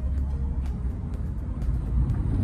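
A steady low rumble with a few faint clicks, under faint background music.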